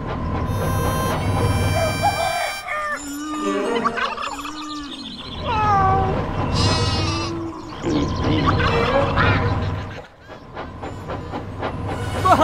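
Background music with farm animal sound effects laid over it: low mooing calls about three seconds in, followed by other gliding farm animal calls.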